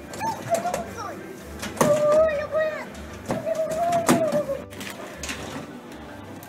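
A child's voice making two long held vocal sounds of about a second each, steady in pitch and dropping at the end, with short gliding calls before them and a few sharp knocks.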